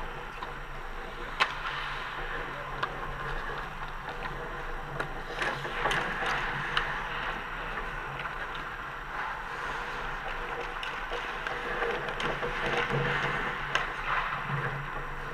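Hockey skate blades scraping and hissing on rink ice, with sharp clacks of sticks and puck scattered through it. The loudest clack comes about a second and a half in. A steady low hum runs underneath.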